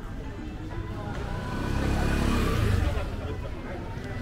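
A motor vehicle passing close by on a city street, its engine sound swelling to a peak about two and a half seconds in and then fading, over the murmur of a crowd.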